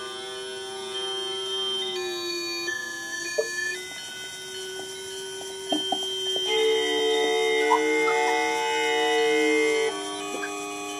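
Electroacoustic music from a sensor-driven Arduino and MaxMSP instrument: layered sustained electronic tones whose chord shifts to new pitches every couple of seconds, with a few faint clicks. It grows louder about two thirds of the way through.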